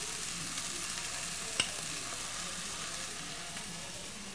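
Fish and vegetable layers of tomato, bell pepper and onion sizzling steadily in oil in a pot over a gas flame, with one light click about a second and a half in.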